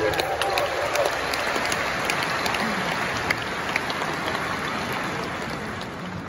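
A large concert audience applauding in an arena, a dense patter of clapping that eases slightly towards the end.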